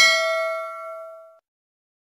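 Notification-bell 'ding' sound effect of a subscribe-button animation: one bright chime that fades out over about a second and a half.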